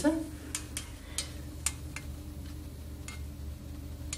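Glass mercury thermometer clicking against a stainless steel kidney dish as its bulb is dabbed in lubricant: a handful of light, sharp clicks, most in the first two seconds and one more near the end, over a steady low hum.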